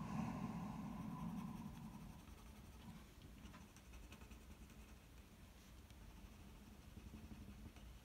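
Faint scratching of a pencil shading on paper, a little louder in the first couple of seconds.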